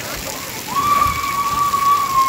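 Splash-pad water spraying and splashing, with a single long, high, held call starting under a second in and carrying on for about two seconds.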